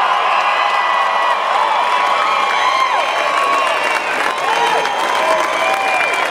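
A crowd cheering, with many high-pitched voices shouting and whooping at once.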